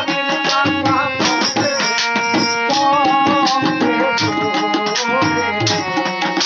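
Live Bengali bicched gaan folk music: a voice singing over tabla, a jingling hand tambourine and wooden clappers striking the beat.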